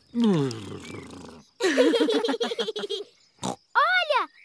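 Cartoon pig family laughing and snorting together, voice-acted: a long falling laugh first, then more laughter, and a short snort and a grunt near the end.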